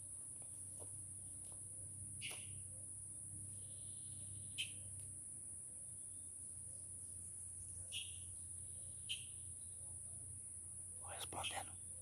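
Faint steady high-pitched drone of insects, with a few short bird chirps scattered through it and a low hum underneath.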